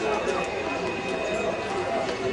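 Hoofbeats of a ridden show-jumping horse moving across a sand arena, with people talking in the background.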